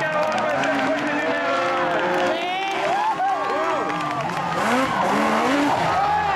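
Several production sedan race-car engines revving on a dirt speedway, their pitches rising and falling and overlapping as the cars slide through the turn.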